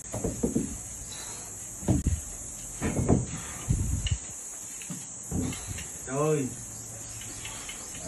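Dull thumps and knocks from a loaded barbell during back squat reps, and a short vocal sound from a person about six seconds in. Under it runs a steady high-pitched insect drone.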